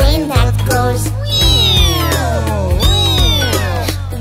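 Children's song over a steady backing beat: a voice sings a short line, then twice imitates an airplane with a long "phhhheeeow" that sweeps down in pitch.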